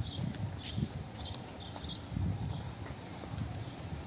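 Small birds chirping in short repeated notes, mostly in the first couple of seconds, over irregular low thuds and rumble.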